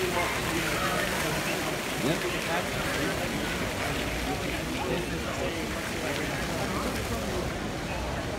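Faint chatter of people talking at a distance over a steady wash of outdoor background noise.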